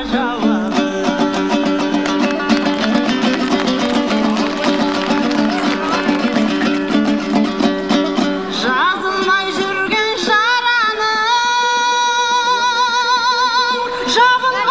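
A Kazakh dombra strummed rapidly in an instrumental passage, then a woman's voice comes in about eight or nine seconds in, singing a terme in long, wavering held notes over the dombra.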